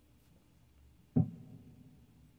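Electric guitar struck once about a second in: a single note or chord that rings briefly and fades, in an otherwise quiet room.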